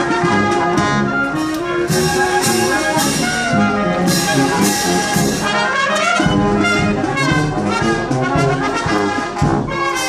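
Military marching band playing a march: brass and woodwind carry the tune over a steady beat from bass drum and cymbals, the cymbal crashes brightest through the middle stretch.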